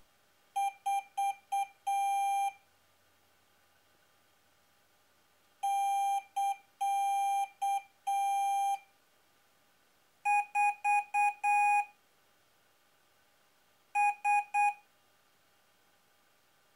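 Piezo buzzers beeping Morse code at one steady mid-high pitch, in four groups of short and long beeps with pauses between. These are microcontrollers sending queries and answers to one another as acoustic data.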